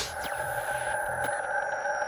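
Electronic logo-intro sound design: a steady held chord of synthesized tones, with faint high pitches gliding slowly downward over it.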